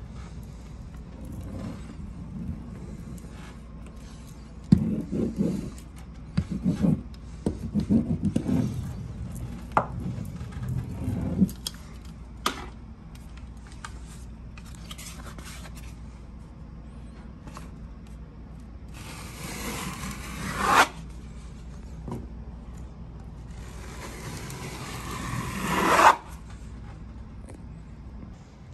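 Seam roller worked along a seam of grasscloth wallpaper: a stretch of irregular low rubbing and rolling scrapes, then two longer scraping sweeps that grow louder and stop suddenly, the second near the end.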